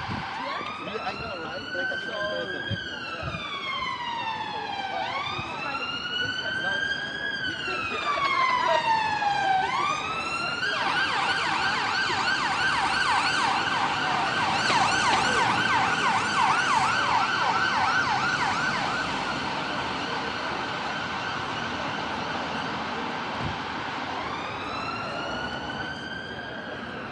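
Emergency vehicle siren: a slow wail rising and falling twice, then about ten seconds in it switches to a fast yelp, which is the loudest part. The yelp fades out, and a slow wail starts again near the end, over street traffic noise.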